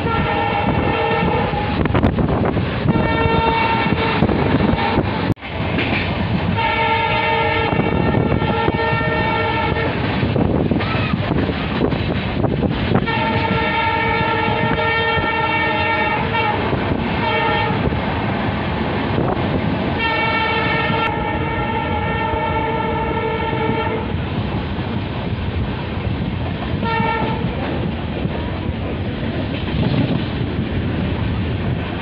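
EMD WDP4D diesel locomotive's air horn sounding a string of long blasts, about six in all with a short one near the end, over the steady rumble and clatter of the coaches running on the track.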